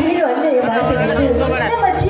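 A woman's voice speaking into a stage microphone, amplified through the PA. A low steady musical drone sits underneath, dropping out briefly and returning about half a second in.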